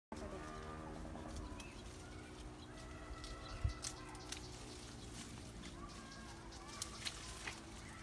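Pruning shears snipping tea-bush branches: several sharp clicks, the loudest a little before halfway, over birds calling in the background.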